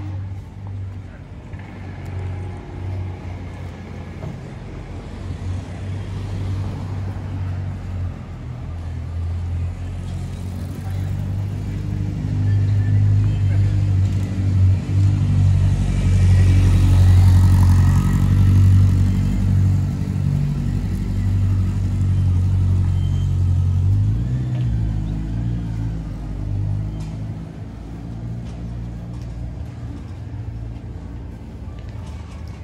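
City street traffic: a motor vehicle's engine running close by, growing louder and passing about halfway through, then easing off.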